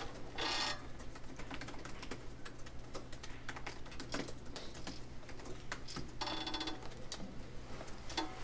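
Typing on a laptop keyboard: quick, irregular key clicks going on throughout, over a steady low hum.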